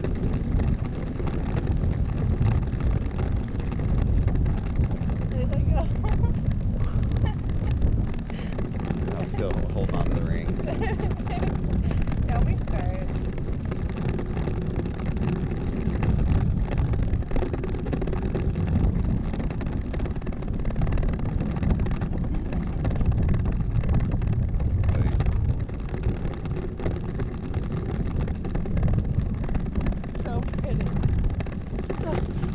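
Wind rushing and buffeting over the microphone of a camera hanging from a parasail rig high above the sea, a steady low rumble that swells and eases. Faint voices come through now and then.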